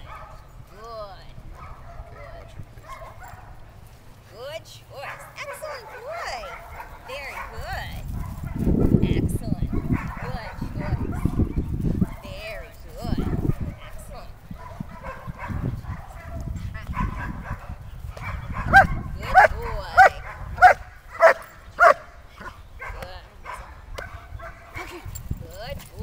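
German shepherd barking: a run of about seven sharp, loud barks roughly half a second apart in the second half, with softer yips and whines earlier. A loud low rumble runs through the middle.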